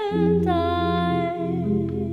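A woman's voice singing long, wordless held notes, moving to a slightly lower note about half a second in, over sustained keyboard chords that change twice.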